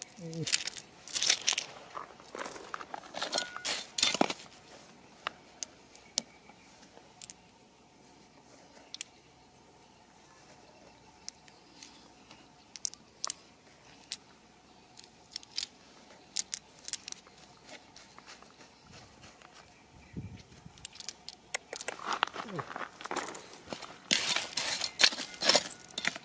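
Small stones clicking and clattering against each other in a hand, with loose rock gravel crunching. The clicking comes in busy bursts at the start and again near the end, with scattered single clicks between.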